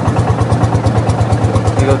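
Long-tail boat engine running steadily under way, a loud, fast, even chugging beat.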